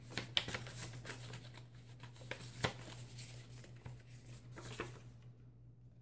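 Faint rustling and crinkling of small paper slips being handled and sorted through, in scattered small clicks, over a steady low hum.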